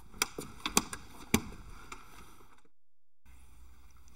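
A few sharp clicks and knocks of hands-on work at a floor panel, three louder ones in the first second and a half. The sound then drops out briefly at an edit, leaving a faint room hum.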